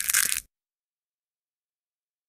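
Brief, bright, hissy logo sound effect lasting about half a second at the very start, as the end logo animation appears.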